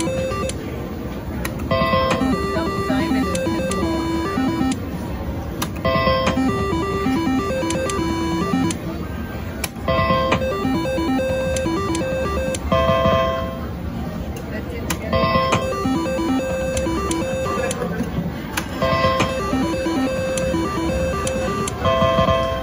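Pinball reel slot machine playing its short electronic beeping spin tune again and again, a new run of notes starting about every three to four seconds as each spin is played, over the steady background din of a casino.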